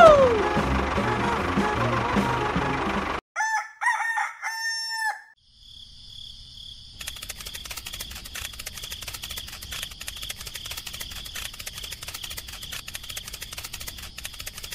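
Background music with a steady beat cuts off suddenly about three seconds in. A rooster crows once, a three-part cock-a-doodle-doo. After a short gap, a steady high trill of crickets sets in and carries on.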